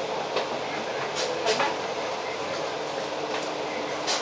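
Cabin noise aboard a Volvo Olympian double-decker bus on the move: a steady rumble of engine and road noise, with a few short clicks or rattles.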